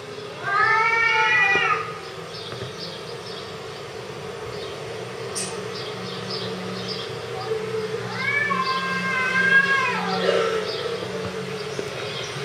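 Domestic cat meowing twice: a short call about half a second in, then a longer, drawn-out meow that falls away at its end about ten seconds in.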